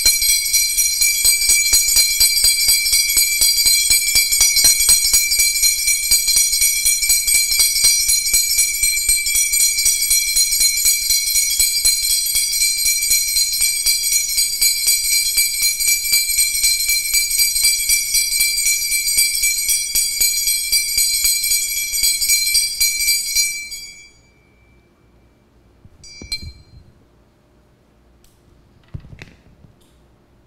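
Altar bells shaken continuously as a rapid, bright jingling of several high tones, rung to mark the blessing with the Blessed Sacrament in the monstrance. The ringing stops suddenly about 24 seconds in, and two faint clinks follow near the end.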